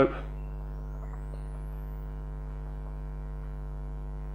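Steady 50 Hz electrical mains hum from the bench electronics, with a buzzy string of overtones above it. A faint high whistle rises in pitch until it passes out of hearing in the first two seconds, and a couple of faint clicks come from the oscilloscope's time-base switch being turned.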